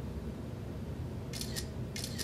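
Camera shutter firing near the end: a couple of short, crisp clicks over a low room hum.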